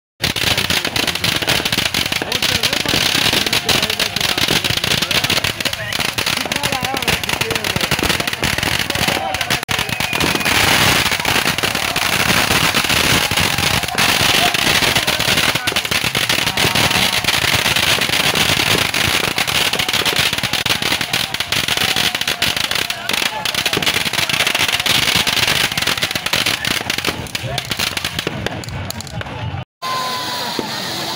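Ground fireworks crackling and popping without a break as they spray showers of sparks, loud and dense, with voices under them. The sound cuts off abruptly just before the end.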